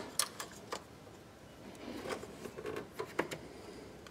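A few faint clicks and light rustling from hands handling and seating a plastic EVAP purge valve in a car engine bay, with a pair of sharper clicks near the end.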